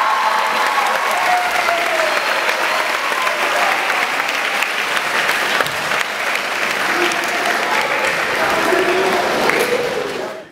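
Audience applauding steadily, with voices calling out from the crowd.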